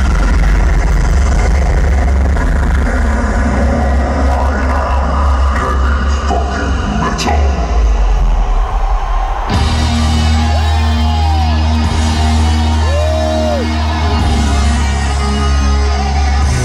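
Heavy metal concert opening through an arena PA, played very loud: a deep low rumble, then about nine and a half seconds in electric guitar comes in with bending notes over steady low chugging notes.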